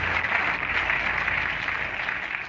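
Audience applause on an old recording of a speech, a dense even clapping that slowly fades.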